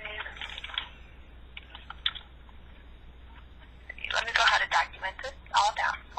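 Indistinct speech over a telephone call, in short bursts near the start and a louder stretch over the last two seconds.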